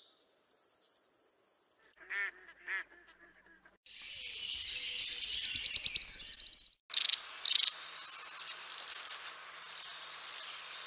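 Songbirds singing in a run of separate snatches. First come quick, high falling notes, then two lower calls. A fast trill follows, growing louder for about three seconds before it stops suddenly. After that come short high whistles over a faint steady hiss.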